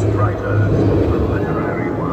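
Indistinct voices over a steady low hum of dark-ride ambience.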